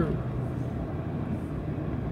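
Steady low hum inside a car's cabin while the car sits still with its engine idling.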